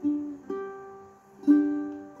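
An aNueNue LOUT Lion Orange tenor ukulele played solo, plucked notes and chords ringing out and fading. Three new attacks fall at the start, about half a second in and about a second and a half in.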